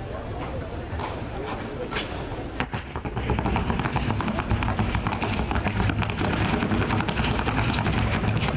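Rapid hoofbeats of a Colombian Paso Fino horse going at the trocha gait, louder from about three seconds in, over a background murmur of voices.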